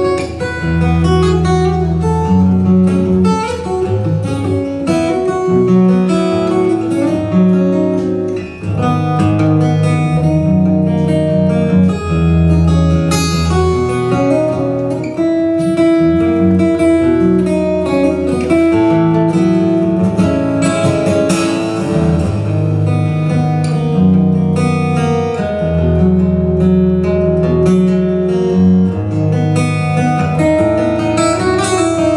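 Solo acoustic guitar played fingerstyle: a steady bass line of held low notes, changing about once a second, under a plucked melody.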